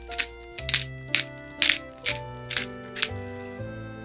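Pepper being sprinkled over raw peeled shrimp: a run of short, crisp bursts, about two a second, over soft background music.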